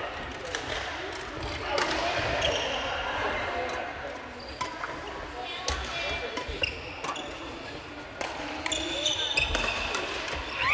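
Badminton rally sounds on a wooden gym floor: rackets hitting shuttlecocks with short sharp clicks, sneakers squeaking on the boards now and then, and players' voices in the hall.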